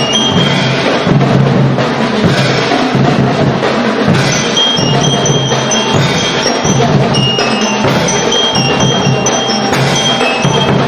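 Marching percussion band with bell lyres playing: bass drums and tall hand drums beat a steady rhythm while the lyres ring out a melody of short, high bell notes, mostly from about four seconds in.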